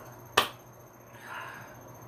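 A single sharp click about half a second in, followed by a faint breathy sound before speech resumes.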